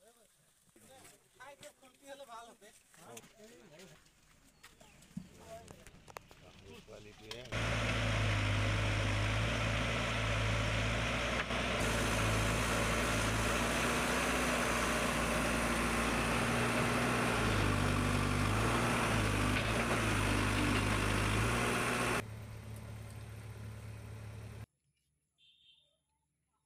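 Faint voices for the first few seconds, then a backhoe loader's diesel engine running steadily and loudly for about fifteen seconds before it cuts off suddenly.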